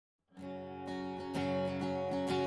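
Background music of strummed acoustic guitar chords, starting about a third of a second in.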